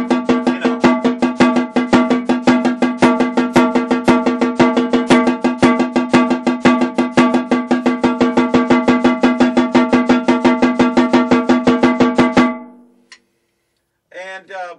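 Snare drum played with sticks in a fast, even, unbroken stream of sextuplet strokes, the sticking changed along the way while the sound is kept the same. The strokes stop near the end and the drum rings out briefly.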